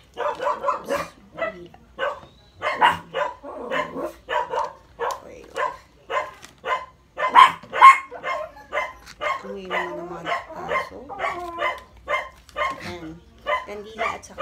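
A dog barking repeatedly, about two to three barks a second, in runs broken by short pauses.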